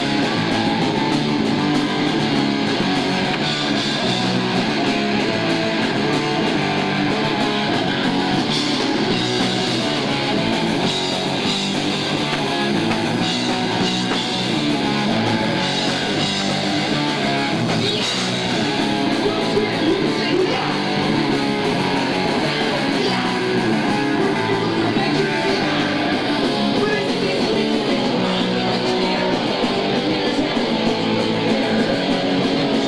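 Punk rock band playing a song live, guitar to the fore, loud and without a break.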